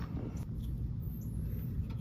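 Quiet outdoor background: a low, steady rumble with no distinct event in it.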